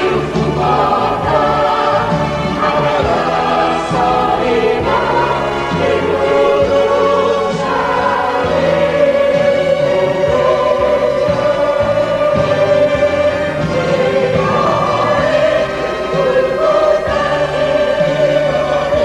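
Mixed choir of men's and women's voices singing a hymn in Arabic, with sustained low notes underneath.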